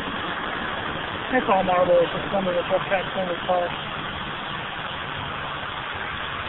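Ghost box radio scanning through FM frequencies: a steady hiss of static, broken by short choppy snatches of broadcast voices between about one and four seconds in.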